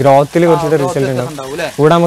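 A man speaking continuously, with a faint hiss of water splashing behind his voice.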